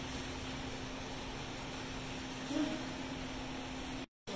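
Steady background room tone: a continuous low hum over an even hiss, with a brief faint sound about two and a half seconds in.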